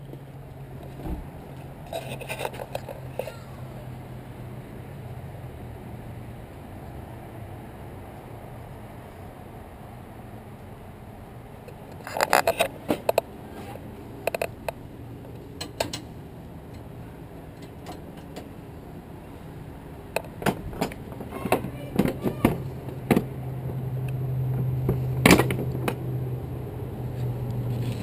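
Scattered metallic clicks and clanks of keys and the rear door latch of a rental box truck being worked by hand to unlock it, over a steady low engine hum that fades early and returns, growing louder, toward the end.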